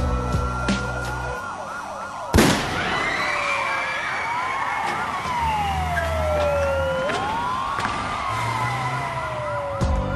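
Several police car sirens wailing at once, their pitches sweeping up and down and overlapping. A single sharp bang, the loudest sound, comes about two and a half seconds in.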